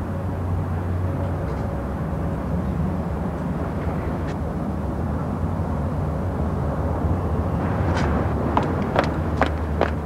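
Steady low rumble of outdoor ambience, like distant traffic. Near the end come a man's footsteps on cobbles, about two a second.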